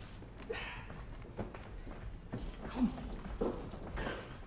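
Faint footsteps and handling noises on a wooden stage floor as a basket is picked up and carried off, a few soft knocks spaced about a second apart. A single word is spoken near the end.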